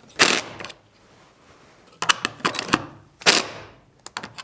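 Cordless DeWalt 20V impact driver driving screws into a small wooden backing strip, in two short bursts about three seconds apart, with sharp clicks in between.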